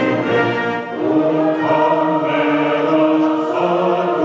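Mixed choir singing in long held chords with a concert band accompanying, with a brief dip about a second in.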